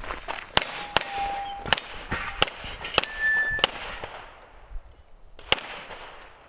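A string of pistol shots about half a second to a second apart, with a pause before a last shot, and steel targets clanging and ringing briefly, in two different pitches, when hit.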